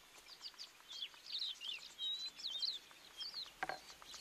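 Small birds chirping in many quick, short, high calls, with one short sharp sound near the end.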